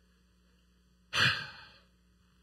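A man sighs once, a short breathy exhale about a second in that fades away.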